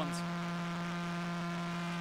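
Sonified radio pulses of the millisecond pulsar PSR J0437-4715, played through loudspeakers: a steady, even buzz with many overtones, its pitch set by the pulsar's spin of about 174 rotations per second.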